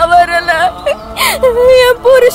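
A woman crying out and wailing in tears, her high voice wavering and breaking.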